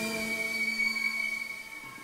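Cello bowed on one thin, high held note that fades away over about a second and a half.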